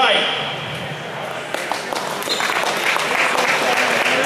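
Audience applause, thin at first and picking up about a second and a half in.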